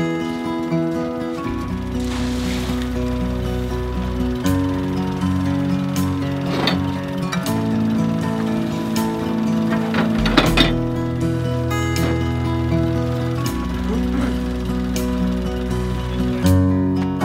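Background music of slow held chords, with a few sharp clicks partway through.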